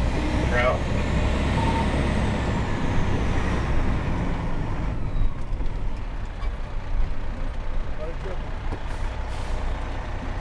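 Cab noise of an HME Ferrara ladder truck under way: a steady diesel engine drone with road rumble. A faint siren wail rises and falls once in the first few seconds.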